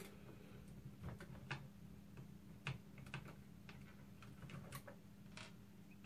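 Faint, irregular clicks and ticks of a small Phillips screwdriver turning out the screws that hold the gearbox inside a plastic airsoft Thompson drum magazine, over a faint steady hum.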